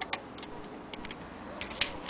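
A few scattered light clicks, about four in two seconds, from the antique hand-crank Singer Model 28K sewing machine as the stitching stops and the sewn card is drawn out.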